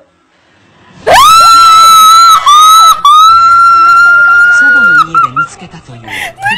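A sudden, very loud, high-pitched scream about a second in, held for about four seconds with two brief breaks, then trailing off into short wavering cries.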